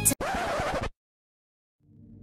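A short scratching sound effect, like a record scratch, cuts the upbeat music off abruptly. About a second of dead silence follows, then low, dark ambient music begins to fade in near the end.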